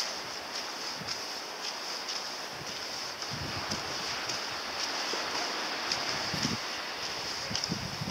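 Outdoor wind ambience: a steady hiss, with low gusts buffeting the microphone in the middle, and faint footsteps crunching on a leaf-strewn dirt path.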